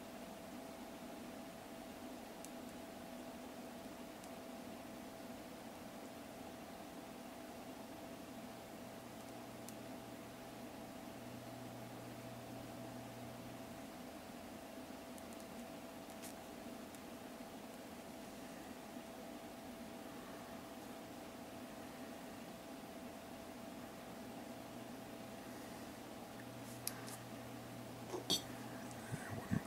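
Quiet room tone: a steady low hum with a faint constant tone, broken only by a few faint ticks.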